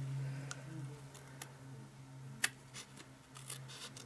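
Scissors trimming the excess paper at a card's edge: a few faint, separate snips, the sharpest about two and a half seconds in, over a low steady hum.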